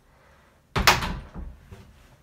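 Interior panel door knocking against its frame or stop: one sharp knock about a second in, followed by a few fainter knocks.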